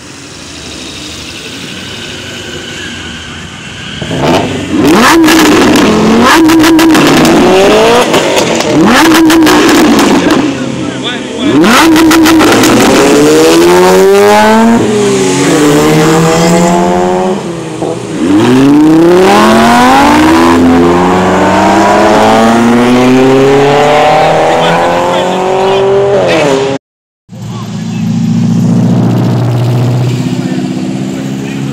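Lamborghini V10 revved hard over and over, its pitch rising and falling back with each rev, starting about four seconds in. The first revs carry sharp cracks, and later the pitch climbs in long sweeps as it pulls away.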